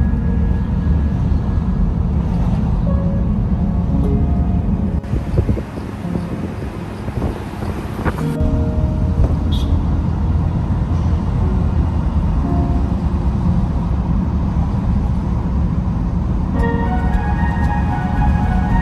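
Car in motion on a city street: a steady low rumble of road and engine noise heard from inside the car, with background music playing faintly over it.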